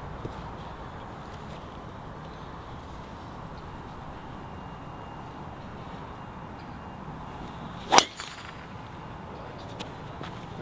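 A golf driver striking a ball off the tee: a single sharp crack about eight seconds in, over a steady outdoor background hiss.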